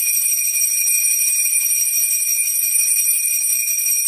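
Puja hand bell (ghanti) rung continuously, a steady high metallic ringing.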